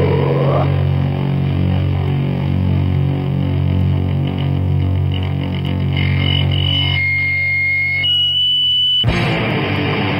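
Lo-fi black-thrash metal demo recording: a distorted electric guitar chord rings out over steady low notes. High single tones are held over it in the last few seconds, before the full band comes back in about nine seconds in.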